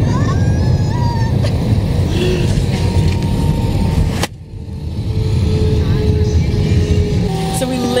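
Airliner cabin noise: a steady low rumble of the engines and airflow, with voices and laughter over it. The rumble drops off sharply about four seconds in, then comes back.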